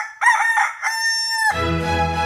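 Rooster crowing sound effect: a cock-a-doodle-doo of a few short notes and one long held note that stops about one and a half seconds in. Classical music with bowed strings comes in right after.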